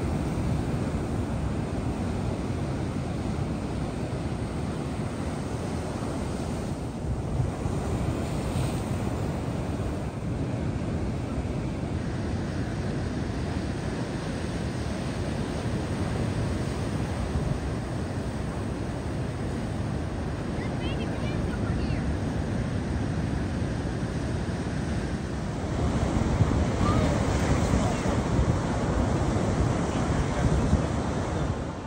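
Ocean surf breaking and washing over a rocky shore, a steady rush, with wind buffeting the microphone. It grows louder a few seconds before the end.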